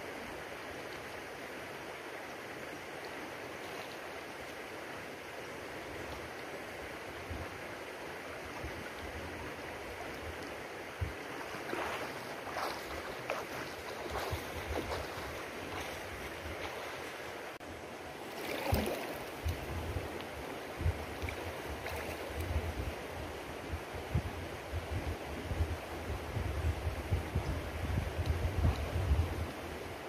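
Shallow river water flowing and lapping, a steady rush heard close to the water surface, with a few brief splashes. In the second half, irregular low bumps on the microphone join in and grow stronger toward the end.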